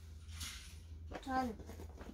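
A young girl's brief, quiet vocal sound about a second in, falling in pitch, after a soft breathy hiss.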